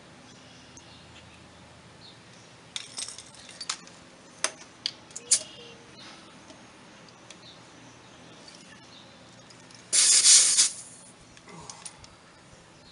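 Compressed-air chuck being worked on a pickup's front tire valve stem: a few small metallic clicks and taps, then, about ten seconds in, a short loud hiss of air lasting under a second as the tire is aired up.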